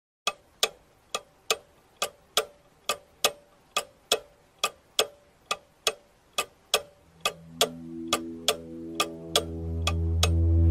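Clock ticking in a steady tick-tock rhythm, a little over two ticks a second. From about seven seconds in, a low droning swell of several held tones rises under the ticks and keeps getting louder.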